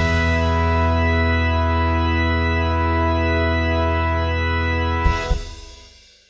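Background music: one long sustained chord held for about five seconds, then a short struck accent and a fade-out near the end.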